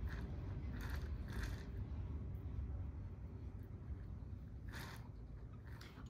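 Fingers smoothing and pressing a thin coil of soft clay into the rim of a hand-built cup: a few short, soft rubbing sounds over a low steady background rumble.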